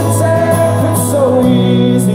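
Man singing live over a strummed acoustic guitar, holding a note that drops in pitch about halfway through.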